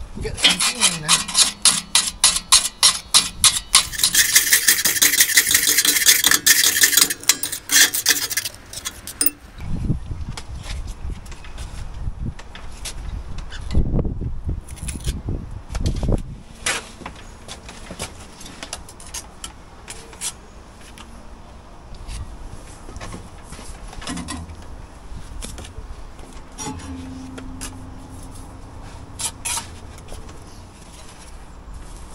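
Hand tools scraping and rasping on brickwork and mortar in quick strokes for about the first nine seconds, densest towards the end of that stretch. After that come a few dull thumps and lighter scattered knocks and clatter.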